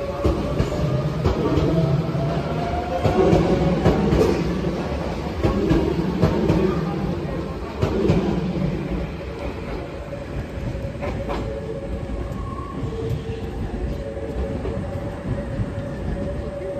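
A maroon Nose Electric Railway 1700-series electric train running past along a station platform, its wheels clacking over the rail joints car after car over a steady motor hum. The clacking dies away about halfway through, leaving a quieter hum as the train draws off.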